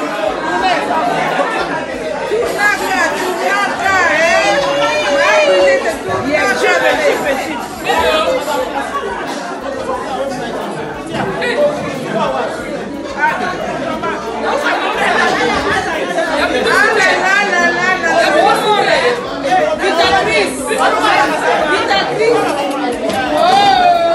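Several women talking over one another, lively chatter throughout in a large, echoing room.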